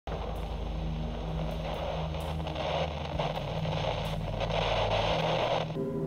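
Television static noise with a low steady hum under it. Both cut off abruptly shortly before the end.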